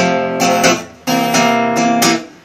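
Acoustic guitar strummed chords, with a brief break just before a second in before the strumming resumes.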